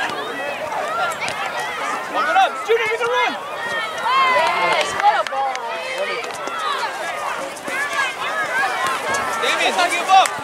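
Many voices of parents and players shouting and calling at once across a youth soccer field, none of it clear enough to make out as words. A few short sharp knocks come through the voices.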